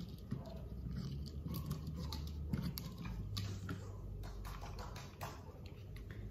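Scattered light clicks, taps and rustles of small camera accessories being handled, a small LED light panel among them, over a low steady hum.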